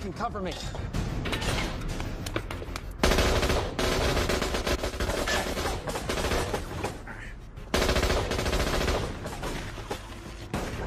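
Shootout in a film's soundtrack: sustained rapid automatic gunfire, getting louder about three seconds in and again near the eight-second mark after a brief lull.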